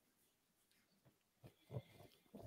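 Near silence: a gap between speakers on a voice call, with a few faint short low sounds in the second half.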